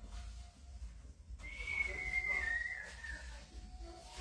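A single whistled note, held for about a second and a half, wavering slightly and dipping in pitch as it fades.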